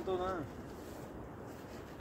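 A voice trailing off in the first half-second, then quiet outdoor background noise.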